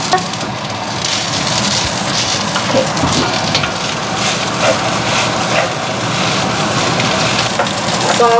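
Rice frying in a hot wok, a steady sizzle, with a wooden spatula scraping and turning it in the pan.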